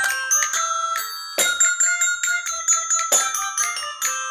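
A small group playing a simple tune on bell-like struck toy instruments, with a keyboard or piano underneath. The notes start sharply and ring on, one after another.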